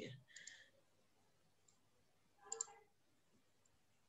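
Near silence: room tone, with two faint short clicks, one about half a second in and one about two and a half seconds in.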